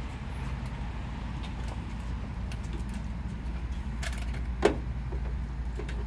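A steady low mechanical hum, with light metallic clicks and clinks of brass hose fittings being handled, the sharpest about three-quarters of the way through.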